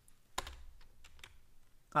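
Typing on a computer keyboard: a handful of separate key clicks, the first and loudest about half a second in.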